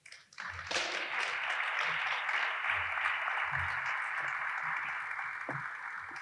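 Audience applauding, starting a little under a second in and holding steady throughout.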